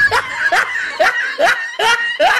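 A person laughing in short, evenly repeated bursts, about two a second.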